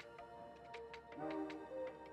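Faint background music: a few soft held notes over a light ticking beat, about four ticks a second.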